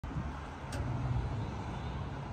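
Steady low hum of road traffic and vehicle engines.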